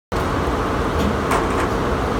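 Steady mechanical din of running textile embroidery machines: a low, even rumble with a few faint clicks.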